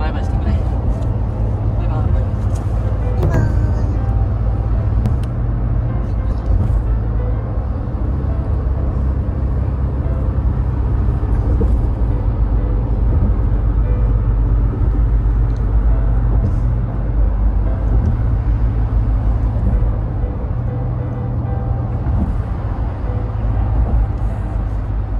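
Steady low rumble of a car driving, road and engine noise heard from inside the cabin.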